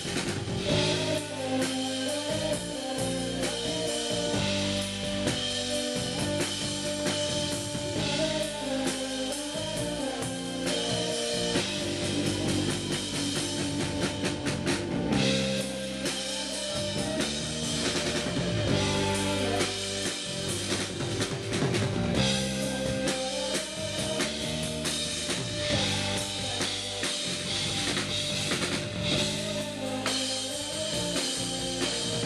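Live indie-pop band playing an instrumental stretch of the song with no lead vocal: drum kit, electric bass, guitar and keyboards.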